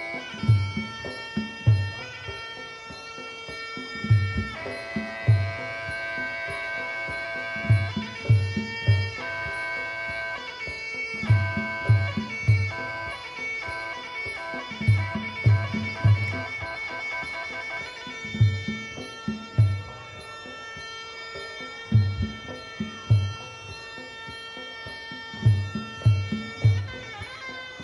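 Traditional Muay Thai ring music (sarama): a reedy pi java oboe playing long held notes that step between pitches, over clusters of low hand-drum strokes. It accompanies the fighters' pre-fight wai kru ram muay.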